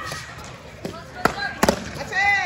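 Foam sparring swords striking during a bout: a few sharp whacks in the second half, the last two close together, over a hall full of voices.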